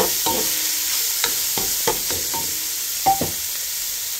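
Crumbled beef sausage and sliced onion sizzling in a frying pan while a spatula stirs them, scraping and knocking against the pan several times. The loudest stroke comes about three seconds in.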